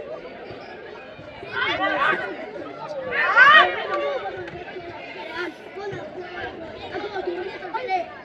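People's voices shouting and calling out over background chatter, with two loud shouts about one and a half and three seconds in, the second rising in pitch.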